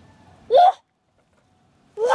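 One short vocal call about half a second in, rising in pitch and lasting about a quarter of a second, followed by abrupt dead silence.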